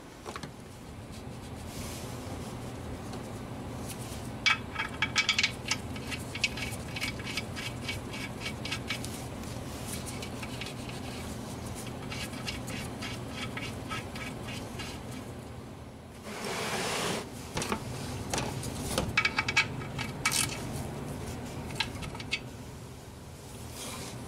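Runs of quick, evenly spaced metallic clicks from a ratchet wrench snugging the oil pan drain plug on its new crush washer, over a steady low hum.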